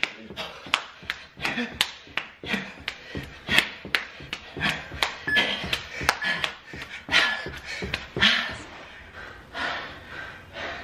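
Quick, uneven footfalls on a carpeted floor from running in place with high knees, with heavy breathing and grunts from the exercising men.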